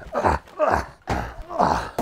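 A man grunting with effort, about four breathy groans that fall in pitch, roughly two a second, from the strain of carrying a heavy tub of fish packed in ice.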